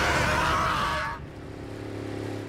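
Cartoon vehicle sound effects: a loud engine whine over rushing noise that drops away about a second in, leaving a quieter, low, steady engine hum.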